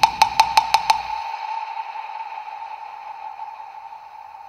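Film background score: a quick run of sharp, dry percussive knocks, about five a second, ending about a second in. Under them a single high held tone slowly fades.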